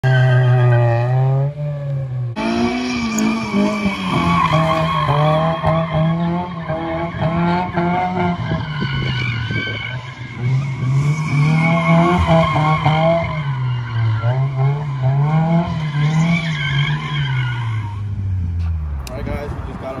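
Turbocharged Acura's four-cylinder engine revved hard and held up as the car spins donuts, pitch rising and falling again and again, with squealing tyres. The revs drop away near the end.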